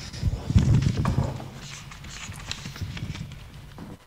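A few soft, low knocks and thumps in the first second or so, then faint scattered clicks.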